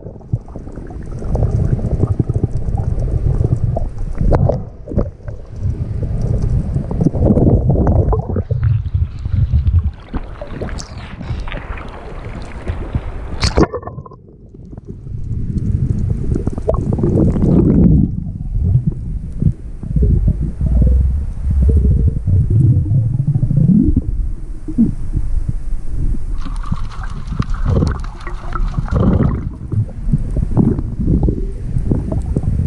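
Muffled underwater rumbling and gurgling of water moving against a submerged camera, rising and falling irregularly, with a hissier stretch about ten seconds in.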